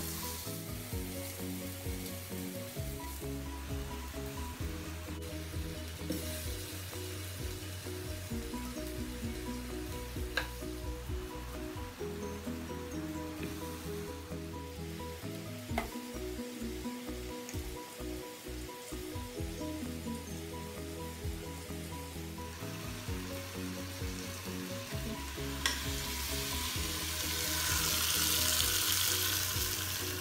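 Chicken drumsticks sizzling in the hot inner pot of a Philips All-in-One pressure cooker on its high sauté setting, the sizzle swelling louder near the end. There are a couple of tong clicks, over background music.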